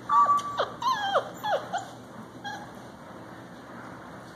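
A puppy whimpering: one held high whine, then several short whines that fall in pitch, all within the first two seconds.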